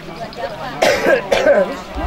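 A man coughs twice in quick succession about a second in, each cough a short harsh burst, during a pause in a chanted recitation.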